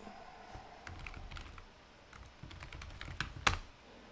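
Typing on a computer keyboard to enter login credentials: irregular runs of keystroke clicks, with one louder click near the end.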